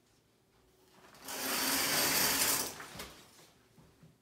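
Shower curtain being pulled open along its metal rod, the rings sliding with a rattling scrape for about a second and a half, then a single click.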